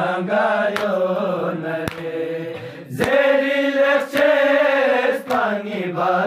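A male reciter chanting a Balti noha, a Muharram lament, in long drawn-out held lines. A sharp beat about once a second keeps time under the voice.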